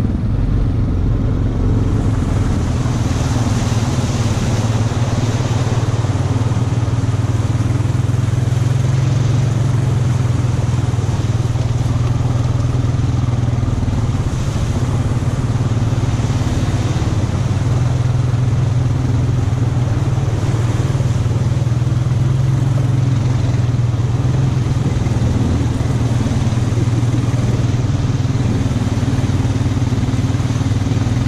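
ATV engine running steadily at an even, low pitch as the quad rides through mud and standing water, with water and mud splashing swelling in and out at times.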